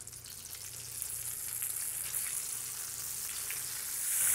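Flour-breaded oysters frying in about an inch of hot canola oil in a pan: a hissing sizzle that builds up about a second in as the oysters go in, with a little light crackling.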